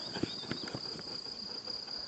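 Crickets chirring in the grass, a steady high note, with a few faint soft knocks of footsteps on turf.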